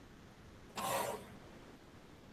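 A single short cough about a second in, over faint room hiss.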